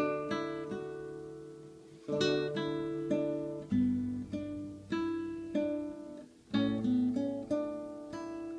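Acoustic guitar playing a chord riff in D, moving to G and then A: chords struck about every second and a half and left to ring, with single notes hammered on and picked on the high strings between them.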